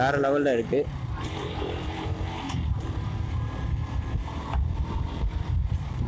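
KTM RC 125 single-cylinder engine pulling the bike up through the gears from second to fourth, heard under a heavy low rumble of wind on the microphone.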